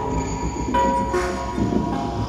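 Live electronic neobeat music from a synthesizer setup: several steady tones layered over a low drone, with new notes entering about three-quarters of a second in and again just past the middle.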